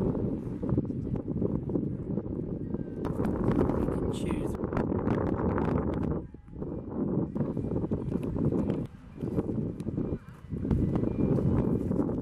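Indistinct background voices over a continuous low rumbling noise, with short dips about six, nine and ten seconds in.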